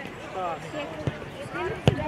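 Voices calling out across a football pitch, with a single sharp thud of a football being kicked near the end.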